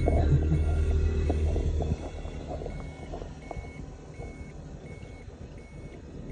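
A small kei truck's engine running as it passes close by, loud for about two seconds and then dropping away, with background music and a repeating short tone over it.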